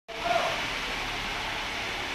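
Mercedes-Benz W115 230.6 straight-six engine idling, heard as a steady exhaust hiss with a faint low hum from its twin tailpipes.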